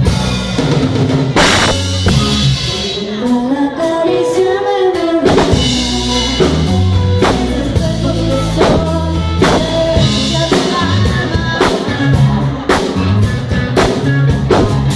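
Live rock band: a woman singing into a handheld microphone over two electric guitars and a drum kit keeping a steady beat. The low end drops back briefly about four seconds in, then the full band comes back in.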